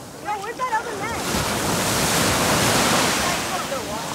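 A small wave rushes in and breaks around a wader's legs in shallow surf. The rushing swell builds about a second in and eases off near the end. Voices call out at the start.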